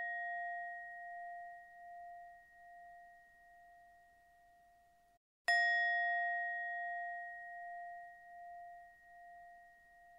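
A bell rings with a clear tone and a long, pulsing decay. The ring is cut off abruptly about five seconds in, and the bell is struck again half a second later and rings on.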